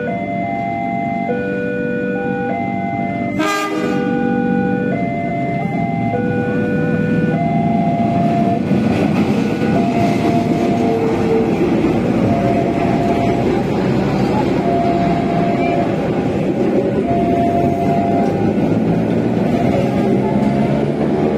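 A level-crossing warning alarm sounds in alternating electronic tones, and a CC 204 diesel-electric locomotive gives a brief horn toot about three and a half seconds in. The locomotive and its coaches then rumble past loud and steady over the rails, with the crossing alarm still sounding faintly.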